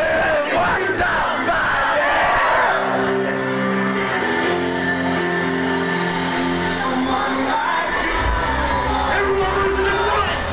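Live hip-hop backing music played loud through a concert PA, heard from within the crowd, with the crowd shouting and yelling over it in the first few seconds. Held notes run through the middle, and deep bass comes in about eight seconds in.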